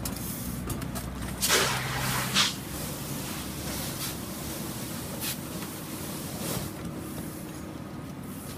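A fire engine's engine and pump running steadily as a low drone, with two short loud bursts of hiss about a second and a half and two and a half seconds in.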